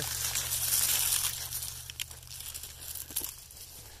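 Rustling of dense cover-crop plants and dry sunflower stalks brushing past as someone moves through the stand, fading toward the end, with a couple of small snaps.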